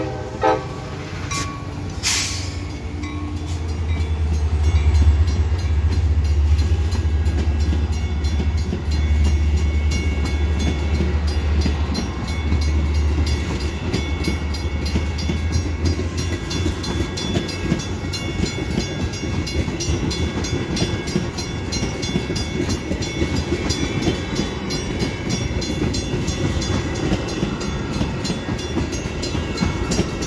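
Metra diesel commuter train passing close by. A horn blast cuts off just after the start, the locomotive's diesel engine gives a heavy low rumble for about the first half, then bilevel passenger coaches roll past with steady wheel-on-rail noise and a fast, even ticking.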